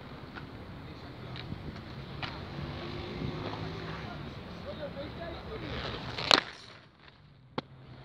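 Inline skate wheels rolling on concrete, a steady rumble, then a single sharp clack about six seconds in as the skates strike the concrete ledge for the trick. The rolling drops away after the clack.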